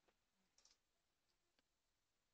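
Near silence: a couple of very faint clicks.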